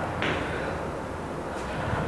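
Steady low background room noise, with one brief soft sound a moment in.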